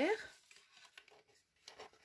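Faint rustling and light ticks of black cardstock being handled and shifted by hand, with a brief soft rustle near the end, after the end of a spoken word.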